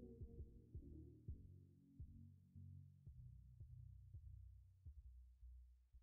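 Outro music fading out, very faint: low sustained bass notes with a soft beat, dying away at the end.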